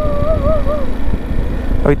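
Italika V200 motorcycle engine running at low speed with steady road and wind rumble. A wavering high tone sounds over it for the first second or so, wobbling before it stops.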